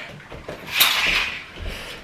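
Brief handling noise: a short scrape or rustle about three-quarters of a second in that trails off.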